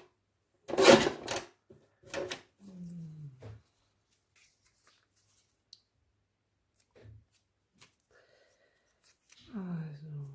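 Paper strips being handled and rustled, with the loudest burst of rustle about a second in and a smaller one a second later. A short hummed 'hmm' from the crafter falls in pitch at around three seconds, and another brief murmur comes near the end.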